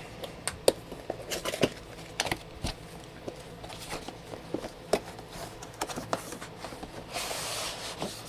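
Cardboard box being handled and opened: scattered taps, clicks and rustles of the cardboard, with a longer scraping rub near the end as the lid slides open.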